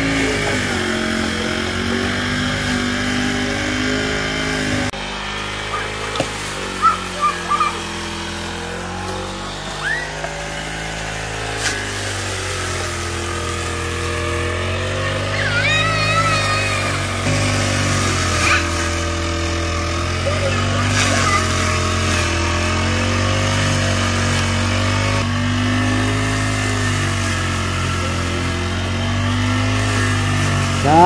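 Backpack petrol brush cutter running as it cuts long grass, its engine pitch repeatedly rising and falling as the throttle is worked.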